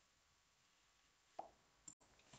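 Near silence: room tone, broken by one faint short pop about one and a half seconds in and a tinier one just before the end.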